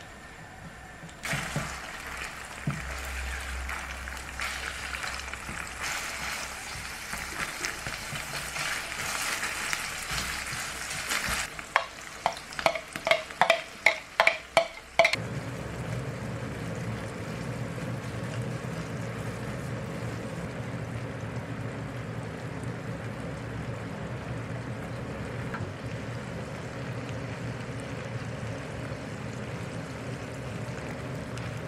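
Food frying in a pan with a steady sizzle. A little past the middle comes a quick run of about eight ringing metal clinks, and then the sound settles into a lower, steadier frying.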